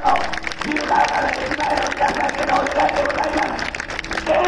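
Indistinct voices amid crowd noise at a street rally, coming in short, evenly spaced bursts about three a second.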